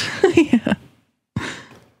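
A person laughing briefly in short choppy breaths, then a breathy sighing exhale that fades out.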